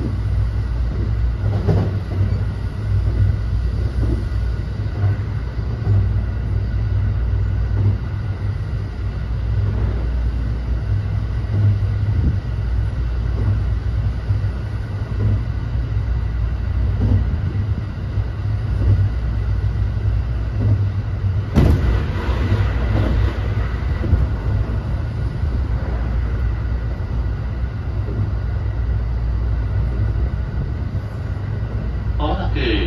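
Running noise heard inside an unpowered JR West 321 series trailer car (Saha 321): a steady low rumble of wheels on rail, with occasional short knocks. About 22 seconds in there is a louder rush of noise lasting about two seconds.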